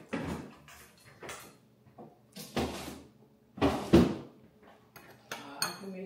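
Kitchen rummaging at the refrigerator: a run of short knocks and clatters as doors, shelves and food containers are handled, the loudest just under four seconds in.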